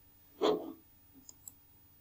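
A short thump about half a second in, then two faint computer mouse clicks in quick succession, over a faint steady hum.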